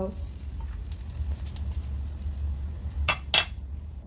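Paratha sizzling in oil in a non-stick frying pan as it is lifted with a spatula, over a low steady hum. About three seconds in, two sharp knocks of the utensils against the pan.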